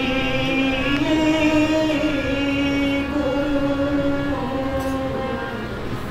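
Odia kirtan music: a harmonium and a voice holding long notes that step slowly up and down in pitch, without drumming.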